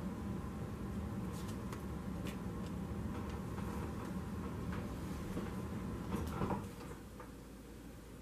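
Tarot cards and the deck handled on a wooden tabletop: scattered light clicks and taps, with a louder knock about six seconds in as the deck is set down. Under it a steady low hum that drops away shortly after the knock.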